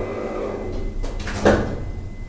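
Otis 2000VF traction elevator starting a trip up: a steady low hum in the car, with a single clunk about one and a half seconds in.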